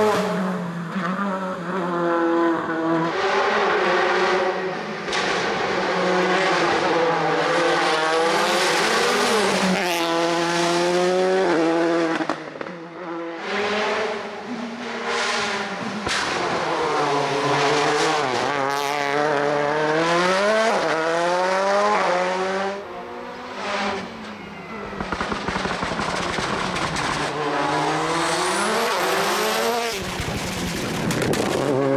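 Škoda Fabia R5 rally car's turbocharged 1.6-litre four-cylinder engine revving hard at full throttle, its pitch climbing and dropping again with each upshift as the car accelerates past. The run breaks briefly about twelve seconds in and again near twenty-three seconds, then the revving resumes.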